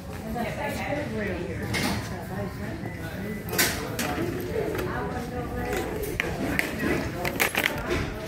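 Wire shopping cart rattling, with scattered clicks and clinks as clothes, caps and a plastic hanger are shifted around in it, over faint background voices.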